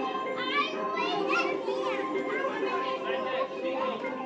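High children's voices calling and squealing in swooping glides, over recorded music with steady held tones.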